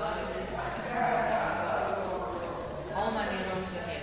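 Speech only: two people talking back and forth in a small room.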